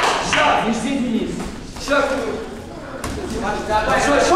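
Voices calling out in a large, echoing sports hall, with one sharp thud about three seconds in.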